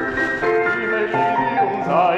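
Classical music with held, steady notes from the accompaniment; near the end, a man's operatic singing voice comes back in with vibrato.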